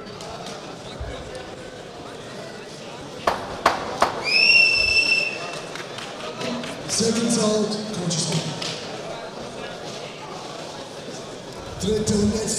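Two sharp knocks, then a single whistle blast of about a second that slides up briefly before holding steady, over the hubbub of a hall between rounds.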